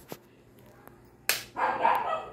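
A sharp crack about a second and a half in, followed at once by a dog barking, a loud pitched call that runs to the end.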